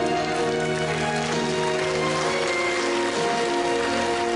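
Enka karaoke backing track playing an instrumental interlude of long held notes over steady accompaniment, with an even patter of noise rising under it from about a second in.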